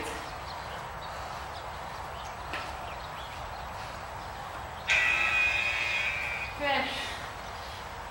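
Electronic interval-timer beep: a steady multi-tone electronic tone that starts suddenly about five seconds in and lasts about a second and a half, signalling the end of a 45-second work interval. Steady background hiss throughout, and a brief voice-like sound just after the tone.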